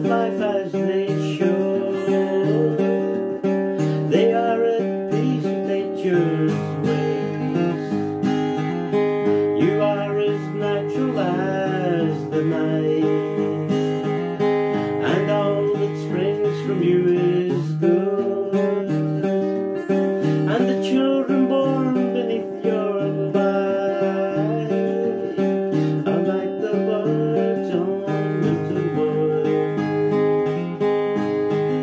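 Steel-string acoustic guitar strummed in a steady folk accompaniment, with a man's voice singing over it in places.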